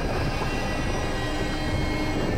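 A steady, loud rumbling roar from the show's dramatic sound design, with faint sustained music tones underneath.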